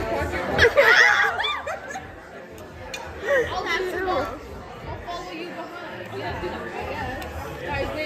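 Young women's voices chattering at a restaurant table over the room's background talk, with a loud high-pitched voice about a second in.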